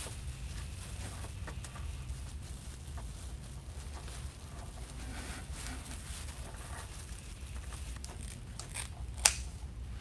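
Soft rustling and crinkling of plastic deco mesh being scrunched and pushed into place on a wreath frame, over a low steady hum. One sharp snip of scissors near the end.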